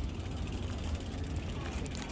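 Wind buffeting the microphone, a steady low rumble, over faint background voices.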